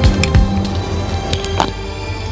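Background music: held tones with a beat of low drum hits that drops out about half a second in.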